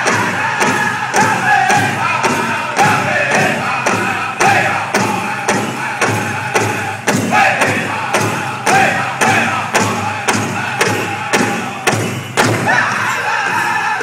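Powwow drum group: several singers striking a large shared drum in unison at a fast steady beat, about three strikes a second, under high-pitched group singing, accompanying the bustle dancers.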